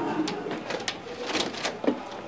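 A faint, muffled voice with a few light clicks, then a door latch clicking open near the end.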